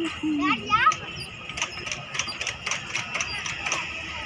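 Metal pivots of an outdoor-gym air-walker clicking and knocking over and over as its footplates swing, with a short voice and a quick squeal near the start.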